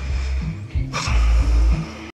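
Music with heavy bass notes, turning louder with a sudden hit about a second in.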